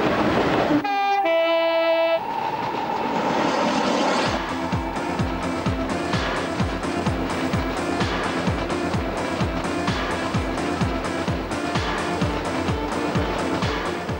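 A train rushing past with a burst of noise and a blast of its two-tone horn lasting about a second, its rush fading over the next few seconds. Then background music with a steady beat of about two thumps a second.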